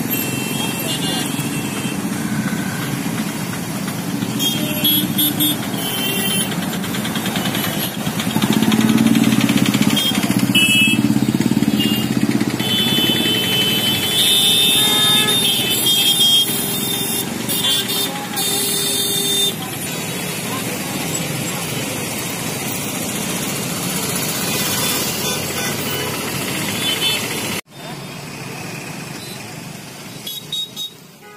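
Jammed street traffic: motorcycle and car engines running, with horns honking several times over it and people talking. The sound drops away abruptly near the end.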